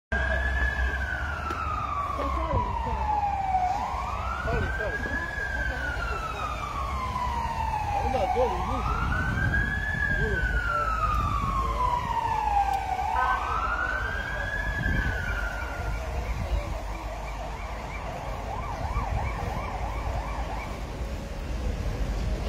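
Emergency vehicle siren wailing, each cycle a quick rise and a slower fall, repeating about every four to five seconds over a low engine and traffic rumble. The siren stops about sixteen seconds in.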